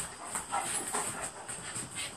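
Two Alaskan malamutes, an adult and a ten-week-old puppy, play-fighting: quick uneven scuffles of paws on a wooden floor, with short dog noises among them.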